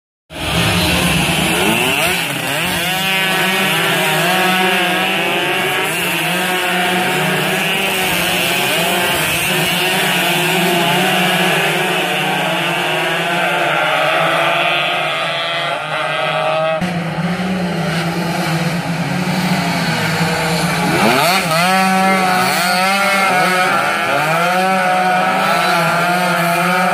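Several two-stroke underbone race motorcycles running hard, their engine notes climbing and dropping with throttle and gear changes as they pass.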